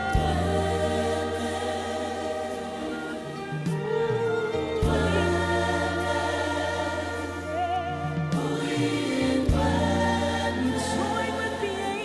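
A group of young voices singing together in harmony, holding long chords that change every few seconds.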